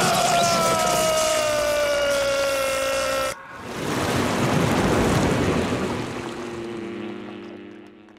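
Cartoon electric shock: a long, high scream that falls slowly in pitch over a crackling electric buzz for about three seconds, then cuts off suddenly. It is followed by a loud rushing buzz from a swarm of jellyfish, which swells and then fades.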